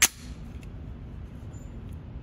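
A single 9mm pistol shot from a Steyr C9-A1 at the very start, sharp and loud with a short echo off the indoor range, followed by steady low background noise.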